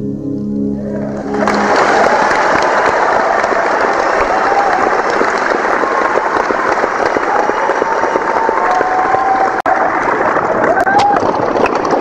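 The last sustained chord of a song dies away while audience applause breaks out about a second in and carries on steadily, with some cheering voices in it.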